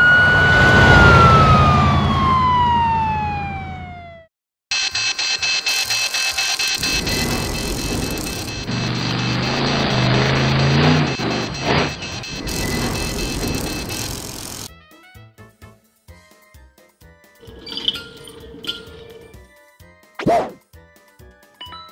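A cartoon police car's siren gives one wail, rising quickly and then falling slowly, over a low engine hum, and stops about four seconds in. Then a loud, dense stretch of sound effects and music runs for about ten seconds, dropping near the end to sparse clicks and soft tones.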